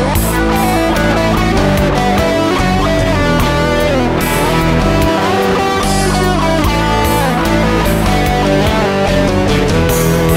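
Instrumental rock passage: electric guitar playing over bass, with notes that slide in pitch.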